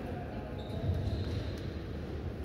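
Room noise of a large indoor sports hall: a steady low hum with a few faint knocks. A thin, steady high tone starts about half a second in and lasts around a second.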